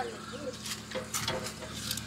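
Light clinks of a hanging spring scale's steel chain and hook being handled, with a short bird call about half a second in.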